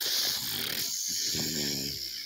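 A person's loud, raspy, hissing growl, starting suddenly and held, rougher and more throaty in its second half.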